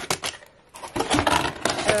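Cardboard box insert and plastic-wrapped items being handled: rustling, scraping and small clicks, with a brief lull about half a second in.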